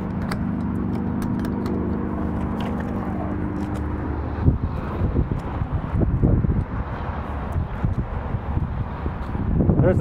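A steady machine hum with several low tones, which stops about four and a half seconds in. It is followed by irregular low knocks and rumble of handling and movement.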